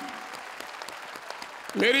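Audience applause: a steady patter of many hands clapping, softer than the speech around it.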